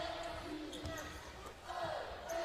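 Basketball bouncing on a hardwood court during live play, a few dull thuds, over the steady murmur of an arena crowd.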